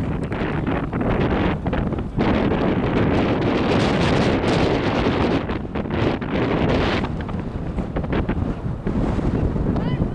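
Wind buffeting the camera microphone, a loud, rough rumble that is heaviest from about two to seven seconds in.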